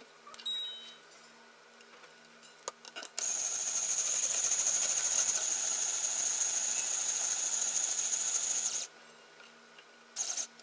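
Power string winder running steadily with a high whine for about five and a half seconds, starting about three seconds in, as it winds a new string onto a guitar tuning post. A brief high ping comes about half a second in.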